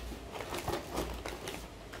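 Light rustling and small taps of tissue paper and snack packaging as a hand rummages in a cardboard box and lifts out a small cardboard snack box, dying away after about a second and a half.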